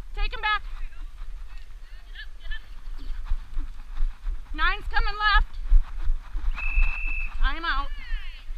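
Three short, wavering high-pitched calls, near the start, about halfway and near the end, over a steady low rumble of wind on the microphone and muffled thumps of hooves in dirt. A brief steady high tone sounds just before the last call.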